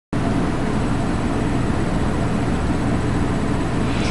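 Steady rumbling background noise with a hiss above it, unchanging throughout.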